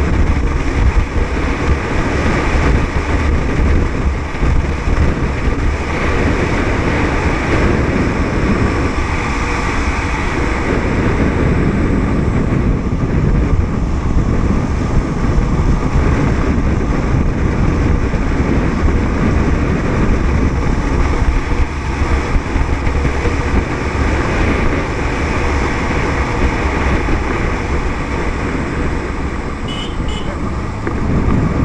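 Steady, loud riding noise from a motorcycle on the move: its engine running, mixed with wind rushing over the microphone.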